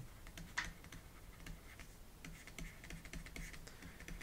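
Faint, irregular clicking taps of a pen stylus on a tablet as words are handwritten, with one sharper tap about half a second in.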